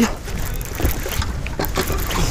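Wind buffeting a small camera microphone on an open boat: an uneven rushing noise with a low rumble.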